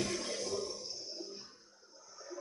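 Quiet room tone with a faint steady low hum and hiss, as the last spoken word dies away over the first second and a half.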